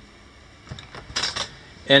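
A few light clicks and rattles about a second in, as the lower door of an RV refrigerator is pulled open.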